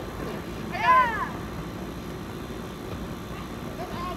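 A single high-pitched squeal from one of the teens, rising then falling in pitch about a second in, over steady outdoor background noise.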